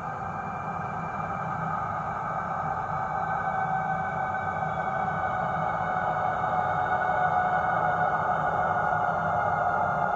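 HO-scale model locomotive running along the track toward the listener: a steady whine of held tones that sinks slightly in pitch over a low rumble of wheels and drive, growing louder as it approaches.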